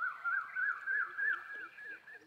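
A bird calling in a fast repeated phrase of short rising notes, about three a second, with a fainter, quicker series of lower calls underneath.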